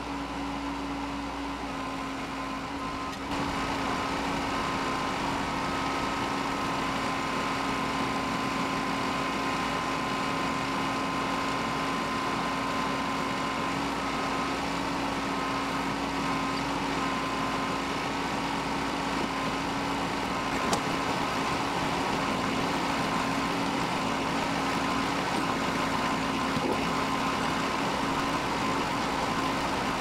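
Mahindra tractor's diesel engine running steadily while its rear backhoe digs, getting louder about three seconds in.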